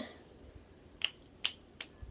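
Fingers snapped three times in quick succession, sharp short snaps a little under half a second apart, starting about a second in.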